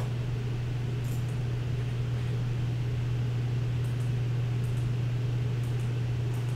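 Steady low electrical hum over a faint hiss, with a few faint clicks about a second in, around four seconds and near the end, like a computer mouse being clicked through a menu.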